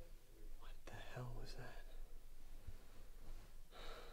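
A person's breathing with faint whispered vocal sounds: a brief low murmur about a second in and a breathy exhale near the end, over a steady low hum.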